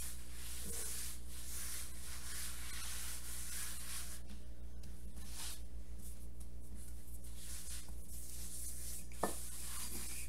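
Hands rubbing and spreading flour across a countertop: soft, uneven swishing over a steady low hum, with one brief tap near the end.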